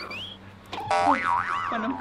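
Cartoon 'boing' sound effect: a springy tone that wobbles up and down in pitch for about a second, starting near the middle. A short rising whistle-like glide comes just before it at the start.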